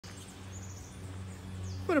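A steady low hum, with a few faint high bird chirps about half a second in and again shortly before the end.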